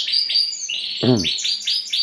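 Many caged canaries chirping and singing together in a breeding room, a dense chorus of rapid high trills.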